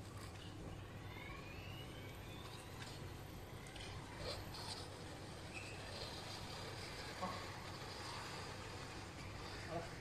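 Small electric cargo van driving off almost silently: only a faint electric-motor whine that rises in pitch as it pulls away, over a low steady hum.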